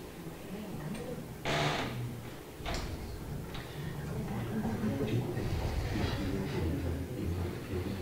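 Indistinct voices talking away from the microphone in a room, with a sharp clatter about one and a half seconds in and a smaller knock about a second later.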